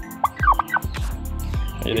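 Domestic tom turkey gobbling, a short burst of rattling calls about half a second in.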